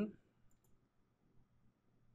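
A few faint computer mouse clicks over quiet room tone, about half a second in and again near a second and a half.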